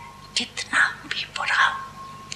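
Soft, breathy speech with little voice in it, heard as three short bursts.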